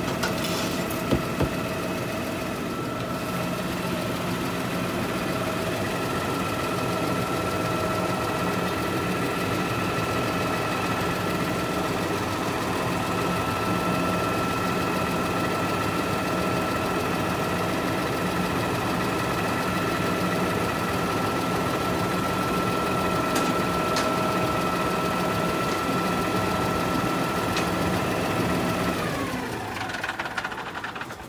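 Garbage truck standing with its engine running, a steady hum carrying a high whine. A couple of sharp knocks come about a second in. Near the end the whine drops in pitch and the sound dies away.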